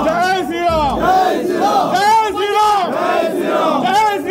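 A crowd of worshippers chanting a short devotional call in unison over and over, many voices overlapping and rising and falling with each call.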